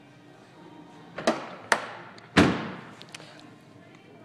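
Trunk lid of a 2014 Nissan Altima sedan being shut: two sharp knocks, then one loud, heavy thud a little over two seconds in.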